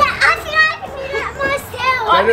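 A young child talking in a high voice, speaking the words "dad, I think I can do that by myself".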